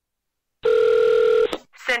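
One short burst of a telephone ringing tone, a steady electronic beep lasting under a second, cut off by a click as the call is picked up. A woman's voice begins answering near the end.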